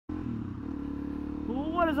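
Suzuki DRZ400SM supermoto's single-cylinder four-stroke engine running at a steady cruising speed, a steady hum that holds one pitch.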